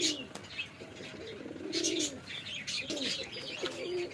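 Caged domestic pigeons cooing over and over, a series of low rolling coos that rise and fall.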